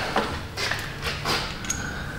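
A few faint, light metallic clinks and knocks from hand tools and bolts as an exhaust heat shield is bolted up, over a steady low hum.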